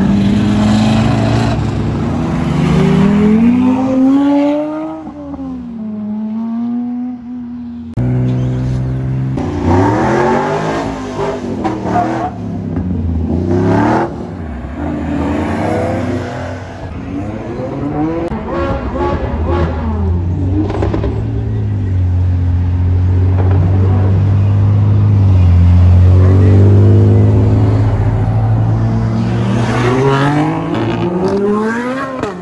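Car engines revving and accelerating in several short takes that cut in suddenly. The pitch climbs and falls with each rev, holds a steady drone through the second half, then rises sharply in a hard pull near the end.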